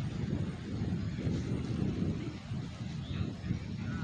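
Low, fluttering rumble of wind buffeting a phone's microphone outdoors.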